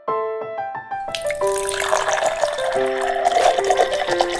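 Background music with a melody of clear piano-like notes throughout. From about a second in, liquid poured from a cup through a plastic funnel into a plastic bottle makes a steady splashing rush. The liquid is the yeast mixture going into hydrogen peroxide and dish soap to start the elephant toothpaste foam.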